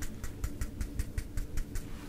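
Eyeshadow brush and palette handled close to the microphone: a quick, irregular run of soft clicks and taps over a low rumble of handling.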